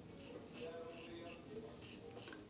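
Faint, short, scratchy strokes of a 1966 Gillette Slim Adjustable double-edge safety razor cutting stubble through shaving cream. It is on a touch-up third pass, with the blade dialed down to a low setting.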